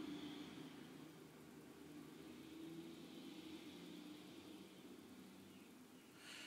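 Near silence: faint room tone with a weak low hum.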